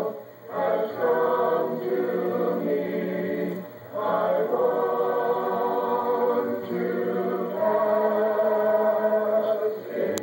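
Youth choir of boys' and girls' voices singing a hymn unaccompanied, in long held notes, with brief breaks between phrases about half a second in and again near four seconds.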